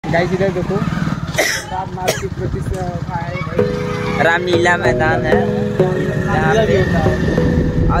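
Motorcycle engine running steadily at low speed while riding. About halfway in, music with singing joins in.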